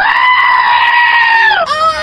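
One loud, high-pitched scream of fright, held steady for about a second and a half and then dropping in pitch.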